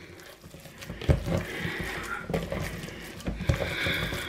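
Hands kneading a raw minced-meat mixture in a bowl: irregular wet squelching with soft thuds as the mince is squeezed and pressed.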